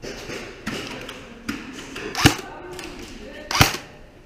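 Airsoft gun firing single shots: two loud sharp cracks about two and a quarter seconds in and near the end, with a few fainter clicks before them.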